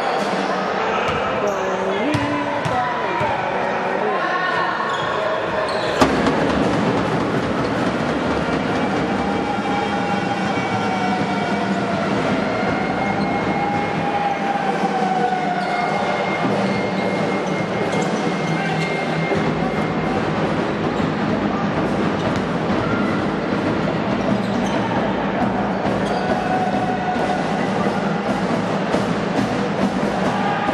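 Basketball game sounds in a sports hall: the ball bouncing and players' and spectators' voices over a steady noisy din, with a sharp knock about six seconds in.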